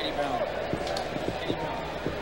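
Stadium crowd noise during a football kickoff return: a steady din of many voices, with a few faint knocks.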